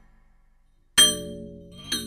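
ATV aFrame electronic frame drum struck once about a second in, giving a sharp metallic hit that rings on with several pitches, then a lighter second strike near the end.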